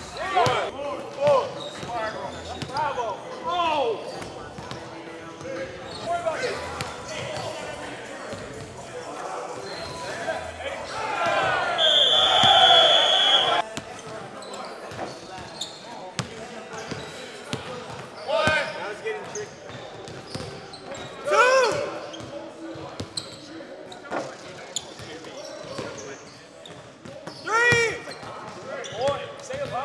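Basketballs bouncing on a hardwood gym floor during shooting practice, with short sneaker squeaks and players' voices echoing in a large hall. About halfway through, a loud steady high tone lasts over a second.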